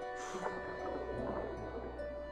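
Film score music with sustained held notes over a low underwater rumble, and a short rushing swish about a quarter of a second in.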